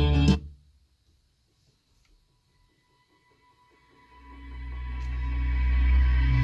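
Aftermarket Android car stereo playing guitar-led music that cuts off abruptly about half a second in as the track is skipped. After about three and a half seconds of silence, the next song fades in with a deep bass swell that builds to the end.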